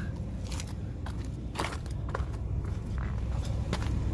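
Footsteps crunching on dry dirt and leaves, a handful of separate crunches, over a low steady rumble.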